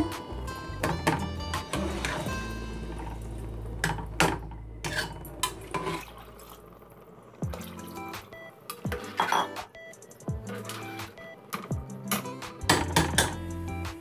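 Clinks and knocks of a glass bowl and a steel slotted spoon against an aluminium cooking pot, with water being poured from the bowl into the pot, over background music.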